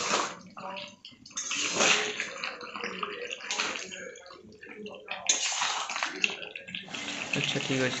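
Chicken curry gravy sizzling and sloshing in an aluminium kadai as it is stirred with a metal spatula, swelling in a surge with each stroke every second or two.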